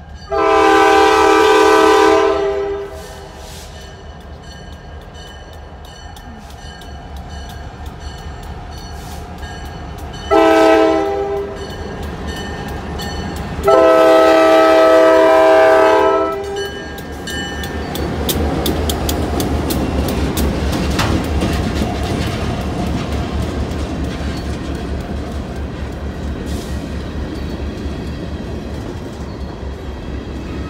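Canadian Pacific freight train's multi-tone diesel locomotive air horn sounding long, short, long, the warning for a road crossing. The two diesel locomotives then pass close by, their engines running under load, followed by hopper cars rolling with steady clicks of wheels over rail joints that slowly fade.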